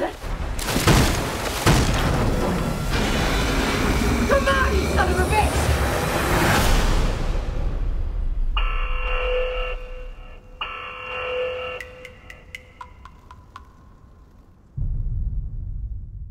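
Film-trailer music and sound design: loud booming hits over a dense rush of noise for the first eight seconds, then two held, chord-like tones, a run of sharp clicks and a low rumble to close.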